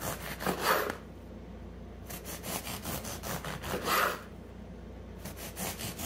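A long knife sawing back and forth through a soft, crusty egg-white bread loaf on a wooden cutting board, a quick run of rasping strokes as slices come off. Two strokes stand out louder, about a second in and about four seconds in.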